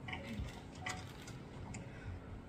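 Quiet room with a few faint, short clicks and light rustling, about three ticks spread across the two seconds.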